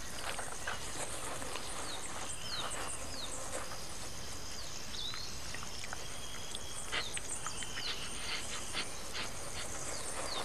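Tropical forest ambience: a steady hiss of insects, with many short falling chirps calling throughout. Over it come scattered scratching and rustling in leaf litter and rotten wood as a coati roots and digs, most of it about seven to nine seconds in.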